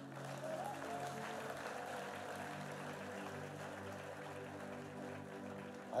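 A congregation applauding over a soft, sustained keyboard pad that holds steady chords underneath.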